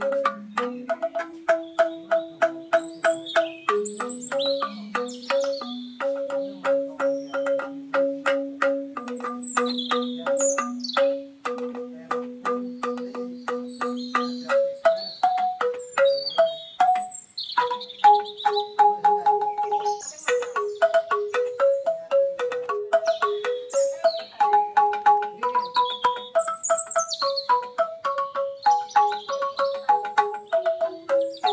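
Banyuwangi angklung ensemble music: bamboo xylophones struck in a fast, dense stream of notes carrying a melody, with a brief break in the middle. Birds chirp faintly high above the music.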